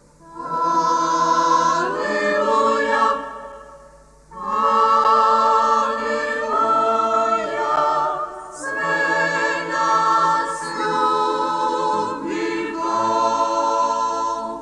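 Mixed choir of men and women singing a hymn a cappella in sustained chords, phrase by phrase with brief breaks between the phrases.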